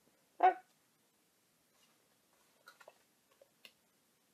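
A single short dog bark about half a second in, the loudest thing here, followed by a few faint rustles and clicks of magazine pages being handled.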